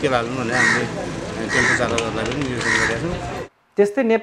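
A man speaking outdoors, with a bird's harsh call sounding three times about a second apart in the background. Near the end the sound cuts to a moment of silence, then another man's voice begins.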